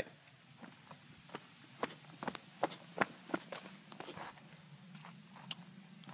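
Footsteps on a forest trail littered with dry leaves and twigs: a quiet, irregular string of steps and small knocks.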